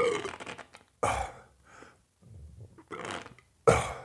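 Air blown by mouth in about five short puffs through a nasogastric tube into the stomach, with burp-like sounds among them; blowing air in this way is a check that the tube sits in the stomach.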